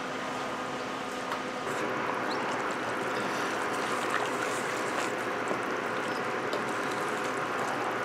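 Wooden spoon stirring a thick, wet mixture of ground beef, baked beans and diced tomatoes in an enameled cast iron Dutch oven, over a steady hiss from the hot pot; the sound grows a little louder about a second and a half in.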